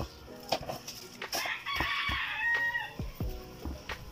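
A rooster crowing once, about halfway through, ending on a held note. Under it are light scattered knocks and rustles as leaf-wrapped rice packets are set into a metal pot.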